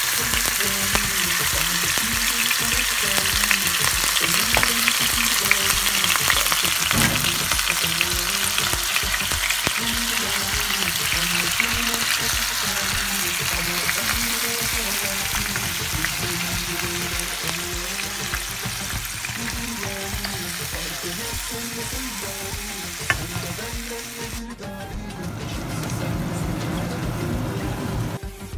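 Yoghurt-marinated chicken breast strips sizzling as they fry in a pan, stirred now and then, with soft background music under it. The sizzle drops away about three and a half seconds before the end, leaving the music.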